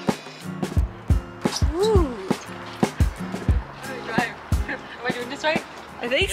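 Background music with a steady beat: low drum hits under held chords.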